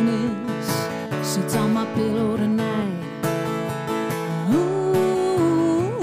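A woman singing a country-rock song over her own strummed acoustic guitar. About two-thirds through, her voice slides up into a long held note.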